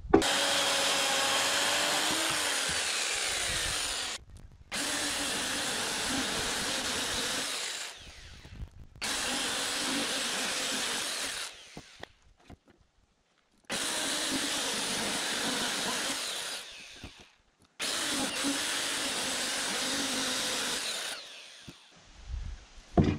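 Handheld electric power tool cutting into the ends of peeled logs, run in five bursts of three to four seconds each with short pauses between.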